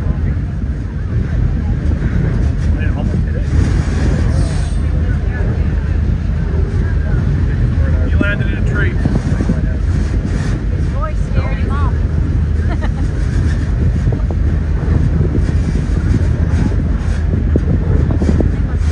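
Passenger train rolling along the track, a loud, steady low rumble of the wheels and running gear heard from aboard.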